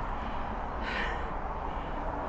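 Open-air ambience with a steady low rumble, and a short breathy hiss about a second in.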